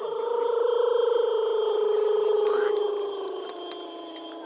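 A single voice holds one long chanted note of a shamanic healing chant, steady in pitch with a slight waver. It fades about three and a half seconds in as a lower voice carries on.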